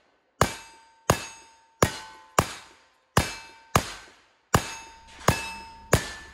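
A rapid string of nine shots from a pair of Ruger New Model Single-Six .32 H&R revolvers loaded with black powder, a little under a second apart, each sharp report followed by the ringing clang of a hit steel target.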